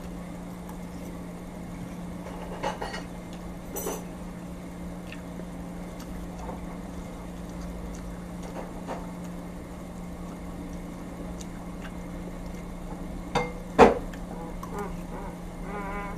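A man eating spaghetti: a metal fork scrapes and clinks against a ceramic plate in a few sharp clinks, the loudest about 14 seconds in, over a steady low hum.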